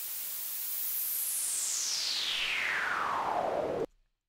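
SuperCollider synth playing noise through a narrow filter band that sweeps, sitting very high at first and then gliding steadily down in pitch. It cuts off suddenly near the end.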